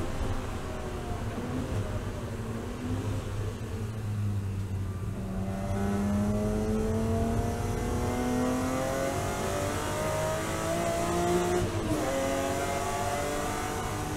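BMW E36 M3 race car's straight-six engine heard from inside the cockpit. The revs wind down under braking for a slow corner, then climb steadily as the car accelerates out. An upshift comes about twelve seconds in, and the revs rise again.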